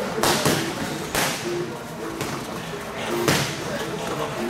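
Boxing gloves smacking against punch pads: a quick double hit at the start, another about a second in, and one more past three seconds. Background music with short held notes runs underneath.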